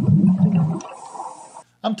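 Scuba breathing sound effect: a steady hiss with a low gurgle of exhaled bubbles. The gurgle stops just under a second in, and the hiss fades out a moment later.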